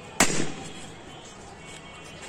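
A green balloon bursting as it is squeezed against a boy's chest: one sharp bang shortly after the start, with a brief tail.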